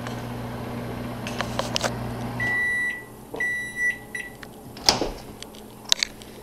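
Over-the-range microwave oven running with a steady hum that stops about two and a half seconds in, followed by its high finishing beeps as the cooking cycle ends. A couple of sharp clicks follow near the end as the door is opened.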